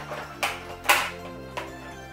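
Two sharp plastic clicks about half a second apart, the second louder, as a magazine is fumbled into a Nerf Double Dealer blaster, over steady background music.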